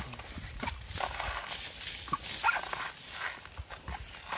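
Coconut husks being torn off on a metal husking spike, with repeated short ripping and knocking sounds. A few brief higher-pitched calls come over it about a second and two and a half seconds in.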